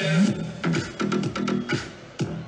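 Electronic dance music from a DJ set over a large outdoor sound system: a quick, driving beat over a bass line that slides up at the start.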